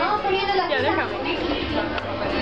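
Indistinct chatter of several people's voices, with no clear words.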